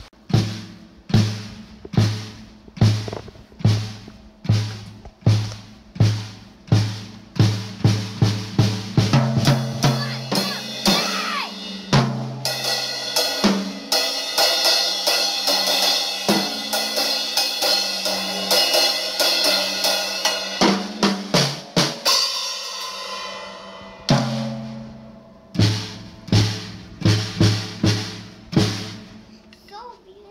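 A young child playing a Pearl drum kit with sticks: single drum strikes just over once a second, quickening after about eight seconds, then about ten seconds of continuous cymbal crashing that thins out, and spaced drum strikes again near the end.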